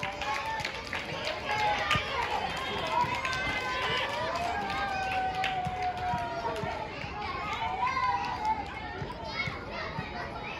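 Distant shouting and calling from young footballers and sideline spectators during play, with one long drawn-out call in the middle.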